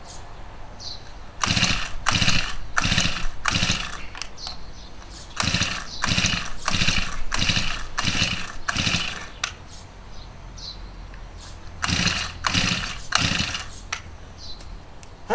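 Small engine of a power sprayer being cranked with its recoil starter in three bursts of rapid, rhythmic strokes, failing to catch each time: a hard-starting engine that will not fire.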